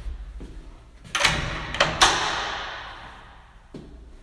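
A restroom stall door pushed open, banging twice: a first knock about a second in, then a louder bang about 2 s in that echoes and fades in the tiled room.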